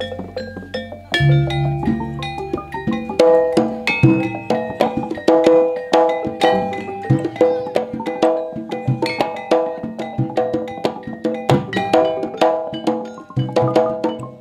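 Javanese gamelan ensemble playing. Rows of bronze kettle gongs (bonang) are struck in a quick, ringing, repeating pattern over drum strokes, and the playing grows fuller about a second in.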